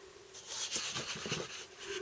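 Sheets of scrapbook paper rustling and sliding against each other as they are handled, starting about half a second in.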